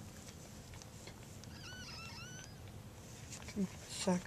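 A newborn cockapoo puppy giving one short, high-pitched, wavering squeal about halfway through, over faint rustling and ticks of hands handling it.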